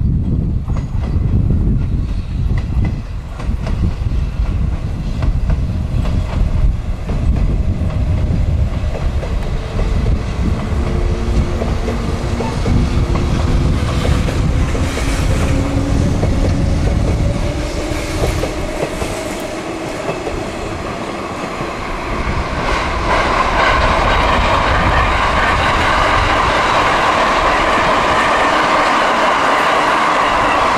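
Electric train of the 189 series running on the rails, with a low rumble and clickety-clack of wheels over rail joints in the first half, a rising whine from about the middle, and a steady high-pitched tone in the last third.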